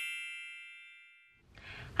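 A bright chime sound effect, several high tones ringing together, fading away over the first second and a half. Then brief faint room tone.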